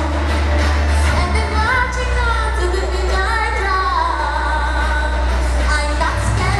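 A woman singing a pop song live into a handheld microphone over instrumental accompaniment with a steady bass line, her voice sliding between held notes.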